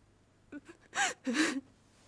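A person's short breathy gasps and a sob-like vocal sound, clustered between about half a second and a second and a half in.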